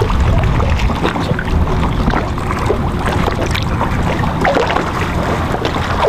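Wind buffeting the microphone over water lapping around a boat, with a few small knocks and splashes as a cast net is hauled in by its rope.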